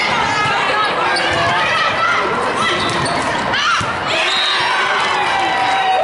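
Volleyballs being struck with sharp slaps over a steady babble of players' and spectators' voices in a large sports hall, with short high squeaks scattered through.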